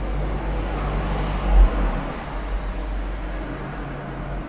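Low, steady background rumble with a faint hum, swelling briefly about one and a half seconds in.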